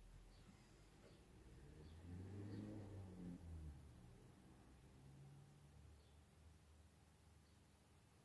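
Near silence: room tone with a faint high whine, and a faint low sound swelling briefly about two seconds in.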